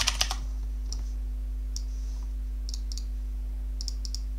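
A few scattered computer keyboard keystrokes and mouse clicks, a short cluster at the start and then single clicks about every second, over a steady low hum.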